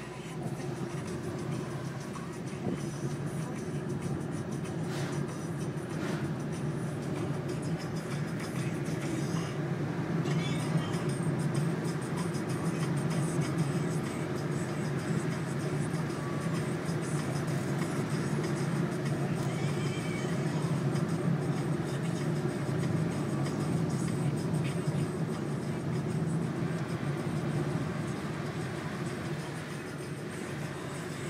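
Steady engine and tyre drone heard from inside a moving car's cabin at an even cruising speed, with music playing faintly under it.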